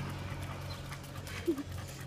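Staffordshire bull terrier panting on a walk, over the steady low hum of a motorcycle engine that fades away.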